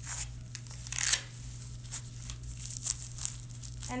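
Hook-and-loop fastener on a back brace's waist strap being pulled and pressed shut, with scratchy ripping rasps, the loudest about a second in, amid fabric rustling.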